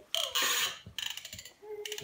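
A small plastic toy car worked by hand on a tile floor. A short hissing rush is followed, about a second in, by a fast run of ratcheting clicks.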